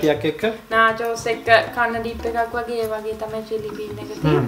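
People talking, with background music that includes guitar.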